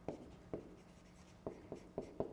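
Pen writing by hand on an interactive whiteboard screen: a few faint, separate ticks and scratches of the pen tip against the surface.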